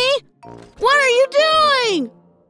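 A cartoon character's wordless voiced exclamations: a short one at the start, then a long drawn-out one that rises and falls in pitch, over soft background music.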